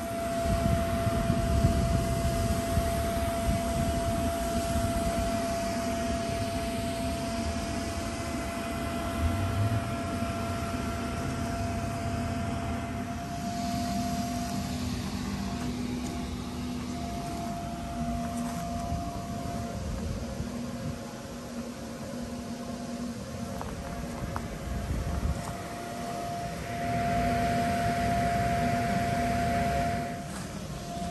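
Electric inflatable blower running steadily as it fills a bounce house: a constant motor whine over a low rush of air.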